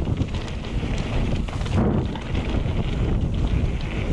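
Wind buffeting the microphone of a mountain bike's handlebar camera as the bike runs fast down a dirt trail. Under it, a steady rumble from the tyres on the dirt, with scattered small knocks and rattles from the bike.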